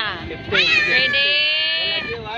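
A person's long, high-pitched vocal cry starting about half a second in, rising and then held steady for about a second and a half.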